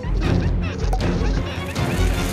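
Cartoon crash and whack sound effects over background music, with a sharp hit about a second in.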